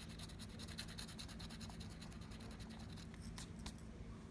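Faint rapid back-and-forth scratching of a plastic scratcher tool on the coating of a scratch-off lottery ticket. Two sharper scrapes come a little after three seconds in, and then the scratching stops.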